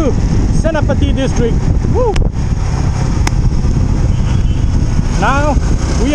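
Steady road noise from a Yamaha R15 V3 motorcycle riding along: the 155 cc single-cylinder engine running at cruising speed under a heavy low rumble of wind on the camera microphone. Short snatches of the rider's voice come through about a second in and near the end.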